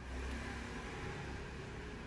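Steady background rumble and hiss, with no distinct events.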